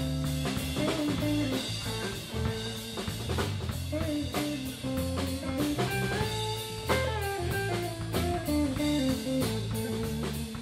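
Live blues band playing: guitar over bass guitar and a drum kit.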